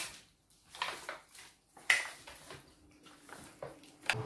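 Hands mixing seasoned raw chicken pieces in a foil tray: irregular soft squelches and crinkles of the foil, the loudest about two seconds in.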